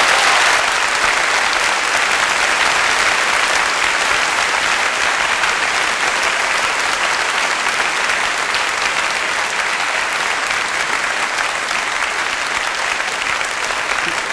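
Live concert audience applauding: dense, steady clapping from a large crowd in a hall, easing slightly near the end.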